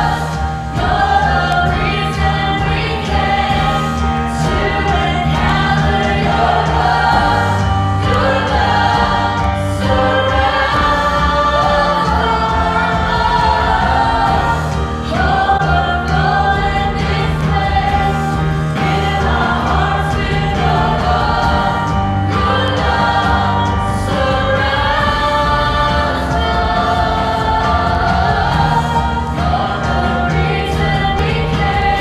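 Live church worship band performing a worship song: several singers, mostly women, singing the chorus together into microphones over keyboard, electric guitar and drums, at a steady, loud level.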